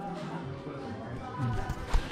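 Children's TV music playing in the background, with rubbing and handling noise from the camera being grabbed and pressed against a baby's clothes, and a single knock near the end.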